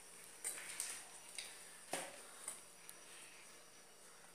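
A few faint, scattered clicks and light knocks, the sharpest about two seconds in.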